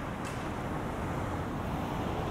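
City street traffic: a steady hum and wash of cars on the road alongside, with a brief faint tick just after the start.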